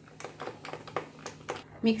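A spoon stirring a glass of iced soda drink: a quick, irregular run of light clinks and ticks against the glass and ice cubes.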